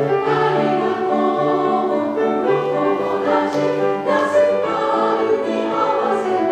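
Women's choir singing a sustained, flowing passage with piano accompaniment, a low note pattern repeating about once a second beneath the voices.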